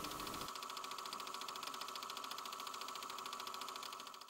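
Faint steady hum with a rapid, even pulsing, over low room tone.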